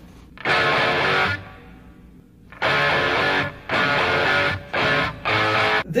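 Music track of distorted electric guitar chords, each held briefly and cut off: one chord about half a second in, a pause of about a second, then four chords in quick succession.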